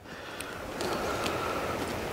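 A vehicle going by on the road, a steady rushing of tyre and engine noise that swells about a second in and holds.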